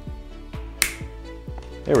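Background music with a steady beat, and about a second in a single sharp snap as a scored plastic mirror sheet breaks under pliers.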